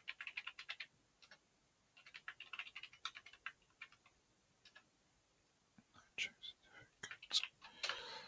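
Computer keyboard typing in short runs of quick keystrokes with pauses between, ending with a louder key press near the end.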